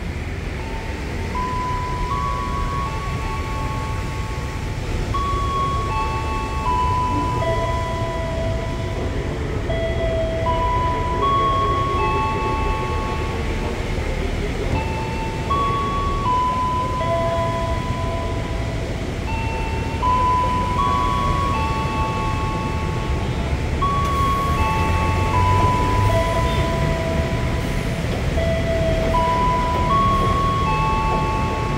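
A station melody played over the platform loudspeakers: a simple chiming tune of steady notes, about one or two a second, repeating its phrase. Under it runs the low steady rumble of the stopped electric commuter train.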